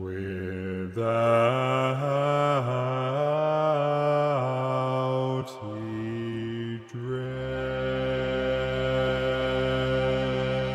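Low bass voices singing a slow, chant-like melody in stepwise phrases, part of a symphonic score. About seven seconds in, the line gives way to a long held chord with a deeper bass under it.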